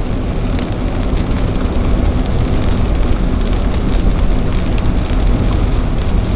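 Rain falling on a car's roof and windscreen, heard from inside the cabin over a steady low rumble of the car.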